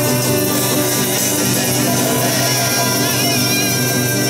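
Live acoustic rock music led by guitar, playing steadily with no singing.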